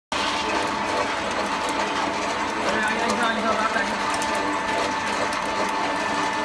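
Industrial screw oil press running under load, driven by a belt from an electric motor: a steady mechanical hum with a constant whine and a fast, irregular clicking rattle as pressed cake is pushed out.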